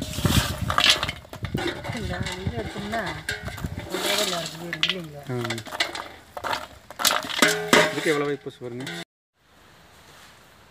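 Repeated sharp clicks and clinks with a person's voice over them; everything cuts off suddenly about nine seconds in, leaving faint background noise.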